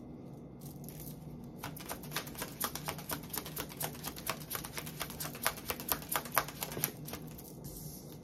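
Tarot deck being shuffled by hand: a quick run of light card clicks, several a second, starting about a second and a half in and stopping about a second before the end.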